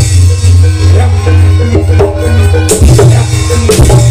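Live Javanese gamelan accompaniment for barongan: drum strokes and low gong tones under a melody of held notes that step up and down in pitch.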